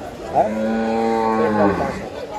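Cattle mooing: a single long moo of about a second and a half, starting about half a second in and dropping away at the end.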